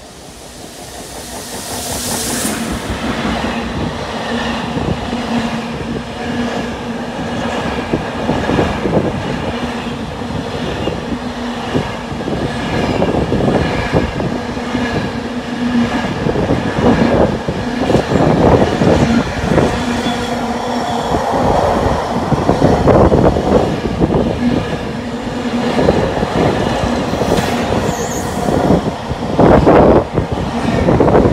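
Class 66 diesel locomotive approaching and passing at speed on an intermodal container train, its engine running as it comes in. The container wagons then run by close, with a steady clickety-clack and rattle of wheels over the rail joints.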